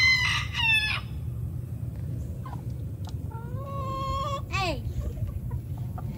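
Chickens in a run: a rooster crows once, a long held note ending in a quick rise and fall about three and a half seconds in, with shorter hen calls and clucks around it.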